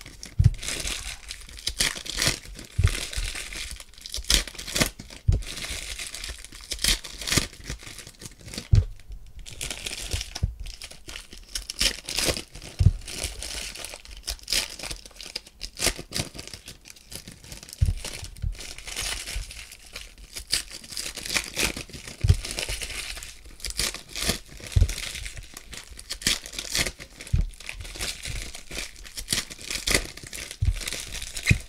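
Foil trading-card pack wrappers being torn open and crinkled by hand, an irregular crackling throughout, with occasional soft thumps of handling.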